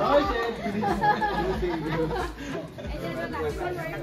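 Several people talking at once in a group.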